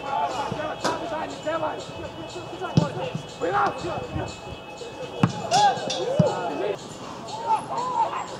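Footballers shouting to one another across the pitch, short scattered calls, with a few sharp thuds of the ball being kicked, the loudest about three, five and six seconds in.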